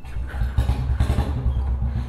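Royal Enfield Bullet Standard 350's single-cylinder engine, fitted with a short aftermarket silencer, catching right at the start and then idling with a steady, low, even pulse.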